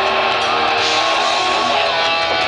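Live heavy metal band playing loud through the stage PA, with distorted electric guitars holding and bending long notes, heard from within the crowd.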